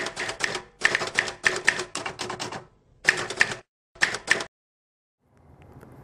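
Typewriter keystroke sound effect: quick runs of key strikes in four groups, stopping about four and a half seconds in.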